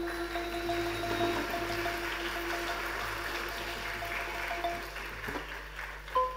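Audience applause, an even patter, under the last low notes of a Thai mallet-percussion ensemble ringing softly and dying away about five seconds in.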